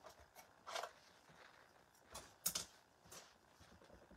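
Faint, scattered handling noises of craft tools on a work table: brushes and a small jar being picked up and set down, with short rustles and light knocks and a sharper scratch about two and a half seconds in.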